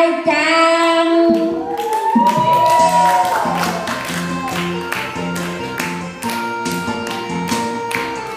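A woman singing through a microphone and loudspeaker, holding long wavering notes, then, from about two and a half seconds in, electronic keyboard music with a steady beat and people clapping along in time.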